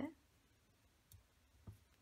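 Near silence with two faint, short clicks of metal knitting needles touching as the first three stitches are taken together onto the needle, about half a second apart.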